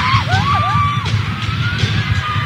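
Live pop concert sound: the band plays with a steady low beat, and high voices glide up and down over it.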